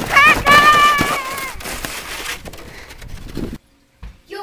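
A child's high-pitched squeal, wavering in pitch, lasting about the first second, then a steady hiss of a plastic snow saucer sliding over snow, which cuts off suddenly near the end.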